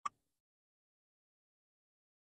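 Silence, broken only by one brief click just after the start.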